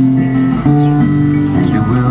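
A song with guitar accompaniment, held low guitar notes changing every half second or so.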